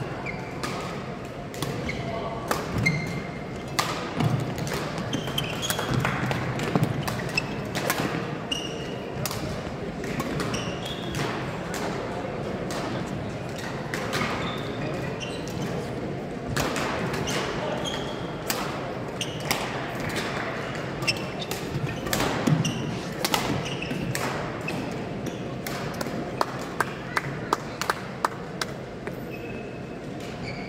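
Badminton rally in a large sports hall: sharp racket-on-shuttlecock hits and footwork on the court, with short high squeaks and a hall echo, over a murmur of voices. Near the end comes a quick run of sharp taps.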